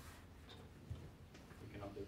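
Chalk tapping and scratching on a chalkboard while numbers are written: a few faint, separate ticks. A brief murmur of voice comes near the end.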